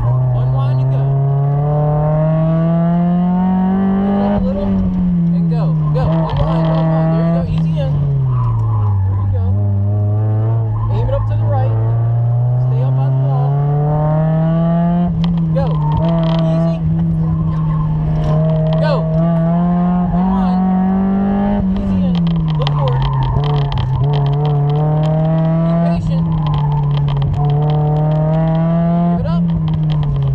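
Mazda Miata's four-cylinder engine, heard from inside the car during an autocross run, its revs climbing and dropping over and over as it accelerates between cones and lifts for turns.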